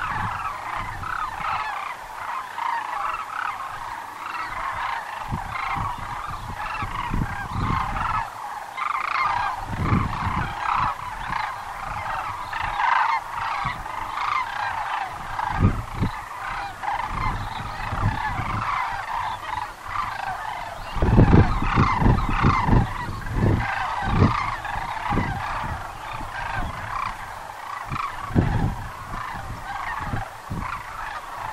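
A large flock of sandhill cranes calling continuously, many rolling, bugling calls overlapping into a dense chorus. Intermittent low rumbles sit underneath, loudest a little past the middle.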